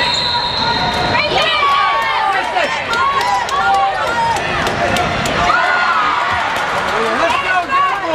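Youth basketball game on a hardwood indoor court: sneakers squeaking on the floor and the ball bouncing, over steady crowd voices echoing in the hall.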